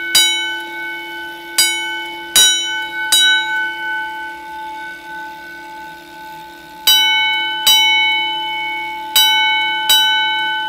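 Edwards 323D 10-inch single-stroke fire alarm bell sounding a coded alarm from a Notifier coded pull station: single ringing strikes about 0.8 s apart, in groups, with a pause of about three and a half seconds in the middle between rounds of the code. A faint steady hum runs underneath.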